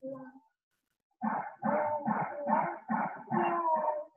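A dog barking in a quick, regular run of about seven barks, starting just over a second in.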